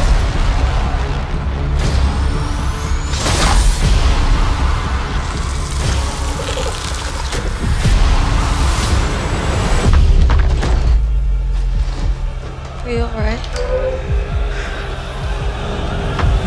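Cinematic horror score: dense dark music with heavy deep booms and repeated sharp impact hits. There are rising high sweeps a few seconds in, and a short wavering cry about thirteen seconds in.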